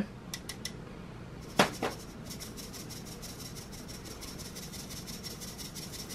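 Fine-mesh metal sieve being worked by hand over a glass bowl to sift cinnamon and almond powder. A few light clicks and two sharp knocks come first, then a rapid, even ticking of the mesh being tapped runs on.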